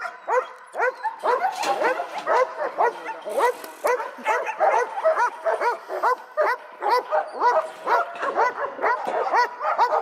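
A dog barking continuously in short, evenly spaced barks, about three a second.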